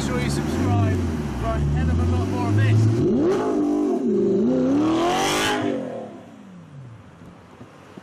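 A car engine revving up and back down two or three times, ending in a long fall in pitch. A man's voice talks over a steady engine hum in the first few seconds.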